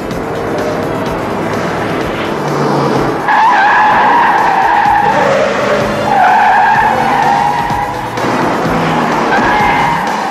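Car tyres squealing as cars corner hard in a chase, in two long screeches from about three seconds in and a shorter one near the end, over engine noise. A film score plays underneath.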